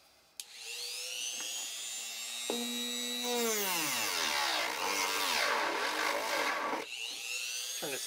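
Rotary tool with a sanding drum and a Dremel 490 dust blower switched on and spinning up with a high whine, then sanding a wooden block. The motor's pitch sinks and stays low while the drum bears on the wood with a rough grinding hiss. Near the end it climbs again as the drum is lifted off.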